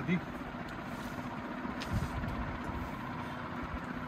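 Faint rustles of a quilted pillow cover and a cloth measuring tape being handled and stretched, over a steady low background hum.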